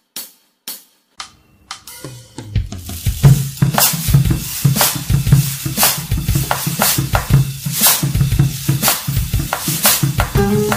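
Music: a few sharp clicks about two a second, then a full drum-kit beat with snare, cymbals and a low bass part that builds in about two seconds in and runs on at a steady beat.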